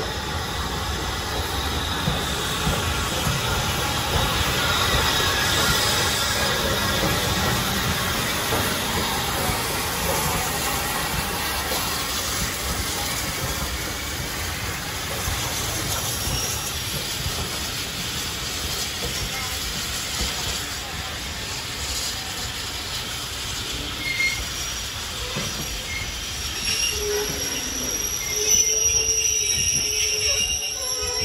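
A steam-hauled train of vintage coaches led by Southern Railway Q class 0-6-0 locomotive 30541 running slowly into the platform, with a steady clatter and rumble of wheels on rail as the coaches roll past. Near the end, thin high squeals from the wheels and brakes come in as the train draws to a stop.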